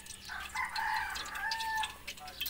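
A rooster crowing once: a single call of about a second and a half that ends in a long held note.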